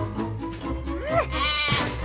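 A sheep bleating once, a short wavering baa past the middle, over background music with a steady beat; a brief rising-and-falling squeal comes just before it.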